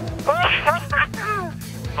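A racing driver's voice over team radio, thin and cut off in the highs, calling out in celebration in short, sliding exclamations, over background music.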